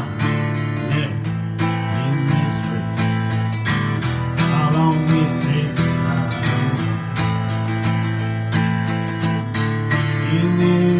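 Acoustic guitar strummed steadily through an instrumental passage of a country-style song, with a melody line bending in pitch over the chords.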